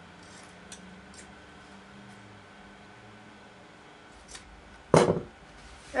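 Scissors snipping the corners of a sewn fabric tie: a few faint snips, then one louder knock about five seconds in.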